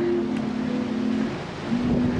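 Wind buffeting the microphone, a low rumbling noise that grows near the end, with a steady low drone held underneath that breaks off briefly after about a second.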